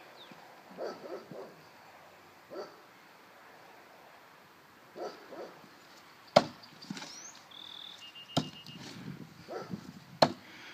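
Thrown knives sticking into a wooden target board: two sharp thunks about two seconds apart, the first the louder, each a two-spin throw drawn from a belt sheath. Faint soft knocks come in the seconds before.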